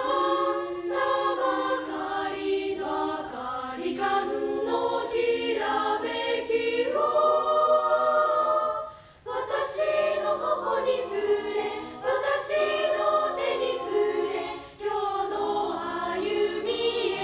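Girls' choir of about twenty junior-high voices singing unaccompanied in three parts: sustained, shifting high chords, with a short break for breath about nine seconds in.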